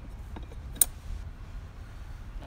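A single sharp click a little under a second in, from a finger on the fuel tank door's push button, over a low steady rumble.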